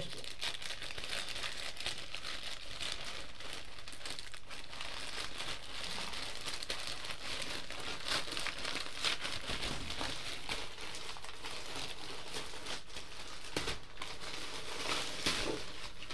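Parcel packaging being unwrapped by hand: continuous crinkling and rustling with small tearing sounds.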